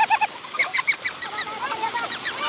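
High-pitched playful shouts and whoops from young men: a fast trilling run of repeated short cries at the start, then scattered yelps, over water splashing from a gushing pipe.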